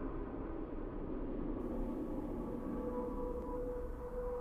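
Quiet, hazy sustained wash of music opening a ballad, with faint held tones underneath; one held tone grows a little stronger near the end.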